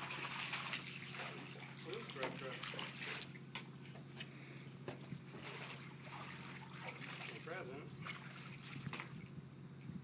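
Faint water sloshing and dripping as a hooked white trout is landed, with scattered clicks over a steady low hum.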